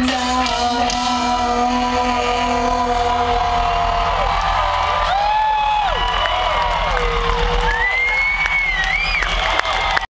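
A live ska-rock band's last held chord rings on for about four seconds as the song ends. A large crowd then cheers, whoops and whistles.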